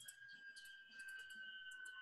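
Near silence: faint room tone with a thin steady high hum and a few faint clicks.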